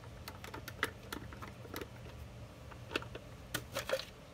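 Screwdriver backing out the screws of a pool pump motor's rear end cover: a string of irregular small ticks and clicks, with a few sharper clicks near the end as the cover is handled.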